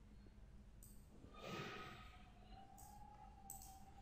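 Near silence with a single soft breath from the narrator about one and a half seconds in.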